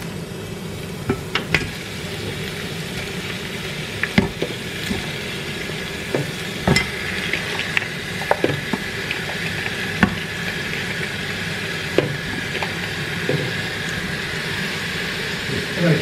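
Sizzling in a pot of sautéing onion, garlic and ginger as raw chicken feet are added by hand, a steady sizzle broken by about eight scattered sharp knocks as the pieces go in.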